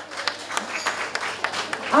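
Audience applauding: a patter of many individual hand claps from a seated crowd.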